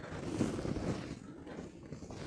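Faint soft rubbing of a hand stroking along the back of the upper arm, the light stroking that opens a massage of the triceps. It grows fainter after about a second.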